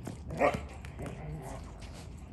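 A dog barking: one short bark about half a second in and a weaker call about a second later, with a few light taps in between.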